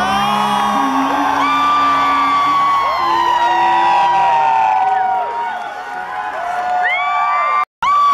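Concert audience cheering and whooping, with many high rising-and-falling shrieks over a steady roar, as the last sustained chord of a ballad dies away in the first second. The sound cuts out for an instant near the end.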